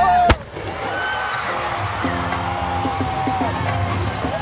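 Marching band music with crowd voices in a stadium. About a third of a second in, an abrupt cut with a click drops the loud held brass notes, and quieter band notes with a steady beat carry on under cheering voices.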